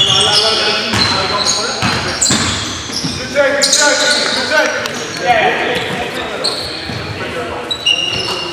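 Live sound of a pickup-style basketball game on a gym's hardwood floor: the ball bouncing on the floor, sneakers squeaking in short high squeals, and players calling out, all echoing in the large hall.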